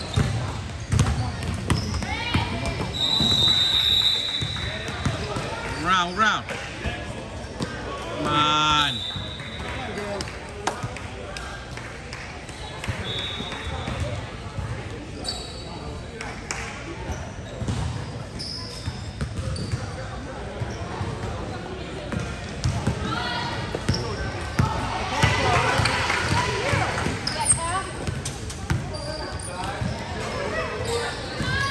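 A basketball being dribbled and bouncing on a gym floor during play, with repeated short knocks. Players' and spectators' voices carry underneath.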